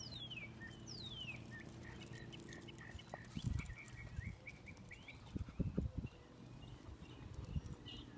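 Birds calling: two high whistles that fall in pitch, then a run of short chirps, over a steady low hum. A few low thumps come around the middle and are the loudest sounds.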